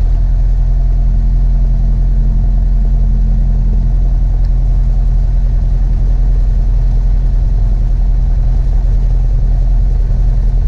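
Single-engine Cessna's piston engine and propeller running steadily at low taxi power, heard from inside the cockpit.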